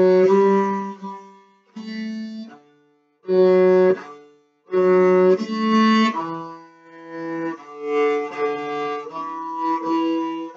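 A cello bowed through a simple folk-tune melody, one note after another at about half a second each, with brief breaks between phrases about a second and a half, three and four and a half seconds in.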